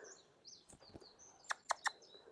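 Faint bird chirps from the surrounding trees, then three quick sharp clicks close together near the end.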